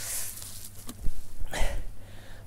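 Handling noise from a camera being picked up and moved, with a couple of low knocks about a second in and a short rustle near the end, over steady wind rumble.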